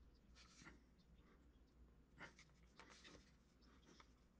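Faint scratching of a pointed metal sculpting tool drawing feather lines into a small piece of clay, in a few short strokes about half a second in and again between two and three seconds.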